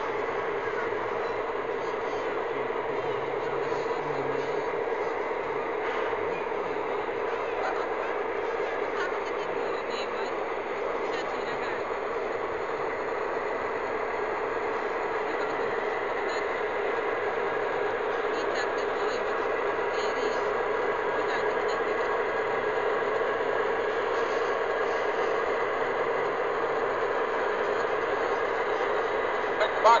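O-scale model of a Romanian Electroputere A-558 diesel locomotive running: a steady drone holding the same level throughout, with voices murmuring underneath.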